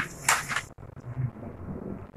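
A picture book's paper page being turned: a short rustle near the start, then faint room sound.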